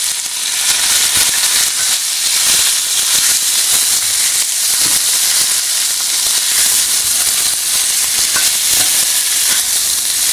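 Pieces of boiled oxtail and beef sizzling in hot oil with fried onion, garlic and tomato paste, being stirred in the pot with a plastic spoon: a steady, dense hiss with scattered small crackles.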